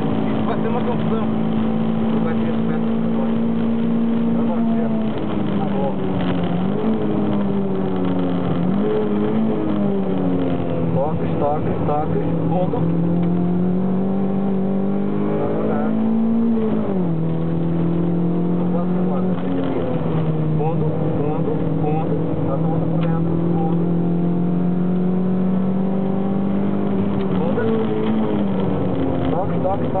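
Toyota MR2 MK2 engine heard from inside the cabin while lapping a race circuit. Its pitch climbs steadily under acceleration and drops sharply several times at gear changes.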